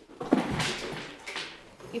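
A tint brush stirring and scraping thick hair-colour cream (toner mixed with corrector) in a mixing bowl, with soft, irregular scrapes that fade towards the end.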